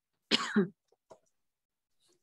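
A person gives a short throat-clearing cough, about half a second long in two quick pushes, followed by a faint click.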